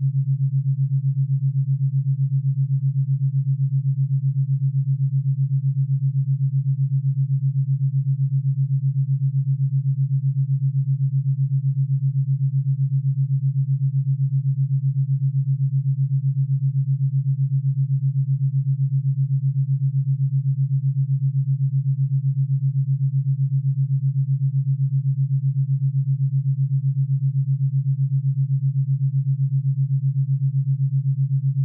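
Theta binaural beat: a steady low pure tone, its two channels set to beat at 7.83 Hz (the Schumann resonance), giving a fast, even pulse.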